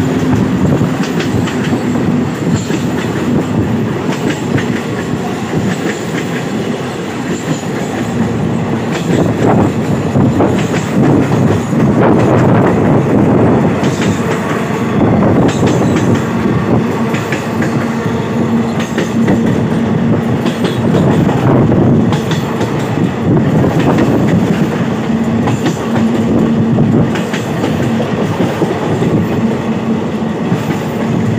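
Passenger train running over a long river bridge, heard from an open coach door: a continuous loud rumble of wheels on rail with frequent clicking from the rail joints, and a low steady hum that drops out for a few seconds at times.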